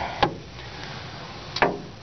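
Two short, sharp knocks about a second and a half apart, the second louder, over low room noise.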